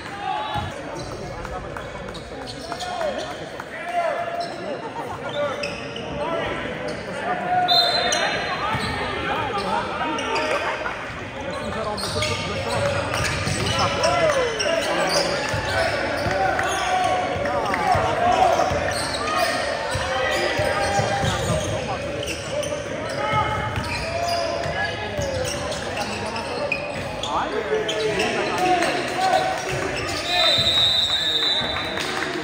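A basketball dribbled and bouncing on a gym's hardwood court, with the voices of players and spectators around it, in a large indoor gym.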